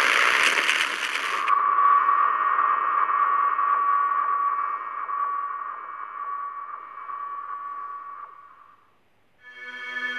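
Animated logo intro sting: a loud, noisy rushing swoosh for about a second and a half, then a single held synth tone that slowly fades away. After a brief silence, music starts near the end.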